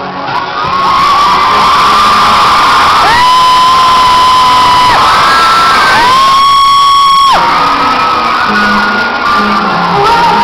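Arena concert crowd cheering and screaming loudly over live music, with two long, high, steady notes held by voices close to the recorder, the first about three seconds in and the second about six seconds in.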